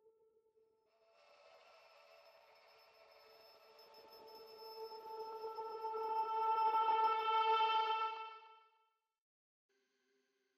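Candyfloss virtual-instrument patch from the Experimental presets, played as a held chord on a keyboard: a bank of steady, bright pitched tones swells in over several seconds, grows loudest about seven seconds in, then stops about two seconds later. A single lingering tone fades away in the first half second.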